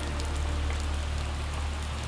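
Heavy rain falling steadily: an even hiss with many small drop ticks, over a steady low rumble.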